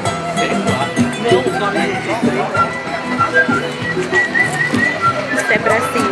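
Music with held high notes over a beat, with people talking and laughing over it.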